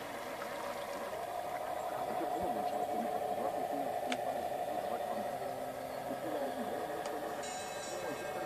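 Radio-controlled model fireboat's motor running with a steady whine as the boat cruises past, under faint background voices.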